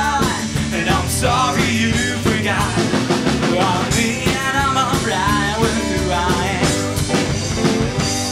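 A rock band playing live: a drum kit, electric and acoustic guitars and a bass guitar, with a lead vocal sung over them.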